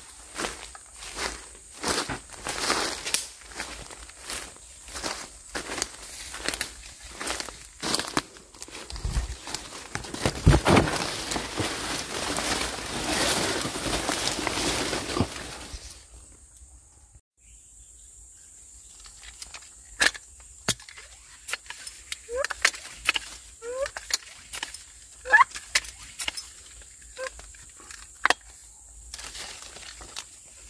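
Footsteps crunching through wet forest undergrowth about twice a second, with leaves and branches brushing against the body and camera, growing into continuous rustling. After a sudden drop about halfway through, the sound turns quieter: a steady high insect whine, a few sharp clicks and several short chirps.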